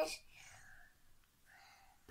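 A young girl's sung note ends right at the start, followed by a quiet pause with only faint breathy sounds before she sings again.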